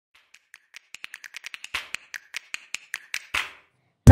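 Logo intro sound effect: a run of sharp clicks that quicken and grow louder, turning into heavier strikes about five a second and ending on one loudest hit with a short ringing tail.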